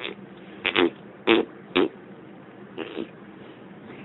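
A person blowing raspberries against skin: short buzzing mouth bursts about half a second apart, the loudest three in the first two seconds, then a fainter one about three seconds in.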